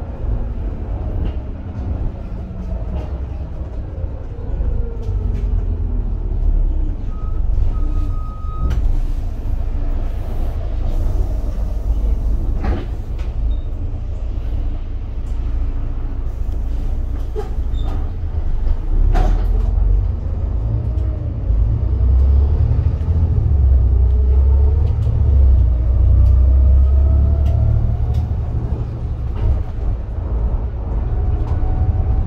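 Volvo B7TL double-decker bus on the move, its Volvo D7C six-cylinder diesel and driveline whine heard from the upper deck. The pitch falls as the bus slows early on and climbs again as it pulls away near the end, over a heavy rumble and a few body knocks and rattles.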